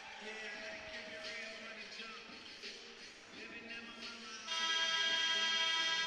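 Arena music playing faintly during a timeout, then about four and a half seconds in a loud, steady horn-like tone with many overtones starts and is held for over a second: the arena horn signalling the end of the timeout.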